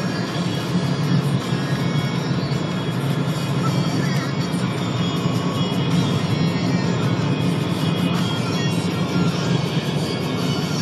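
Music playing over the steady low drone of a car driving at road speed, heard from inside the cabin.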